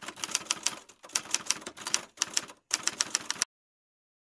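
Typing sound effect: rapid key clicks, about ten a second, in short runs with brief pauses, as text is typed onto the screen. It stops abruptly about three and a half seconds in.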